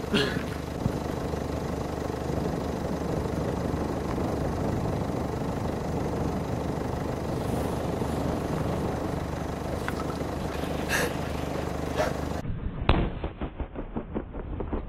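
A steady low hum fills most of the span. Near the end an improvised bomb of expanding spray foam and petrol, set off by a firecracker, goes off with one sharp loud bang, followed by crackling pops.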